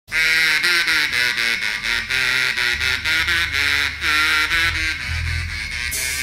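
A melody of short notes, some repeated, played on a small handheld mouth instrument into a microphone, opening a live rock song. A low bass line comes in underneath about three seconds in.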